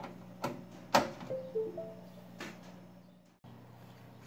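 A USB flash drive being pushed into a front USB port of a desktop PC tower: a few sharp plastic clicks, the loudest about a second in, over the computer's steady low hum. A few short faint tones follow the loudest click.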